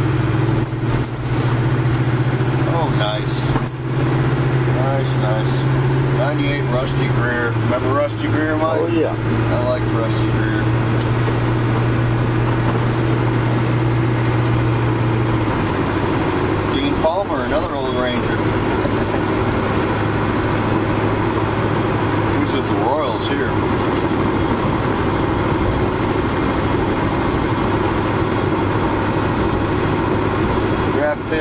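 Steady drone inside a car's cabin in slow traffic: a low engine hum that drops a little in pitch twice, with murmured voices now and then.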